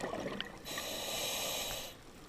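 Scuba diver breathing through a regulator. The gurgle of exhaled bubbles dies away in the first half-second, then the regulator hisses steadily on the inhale for just over a second and cuts off.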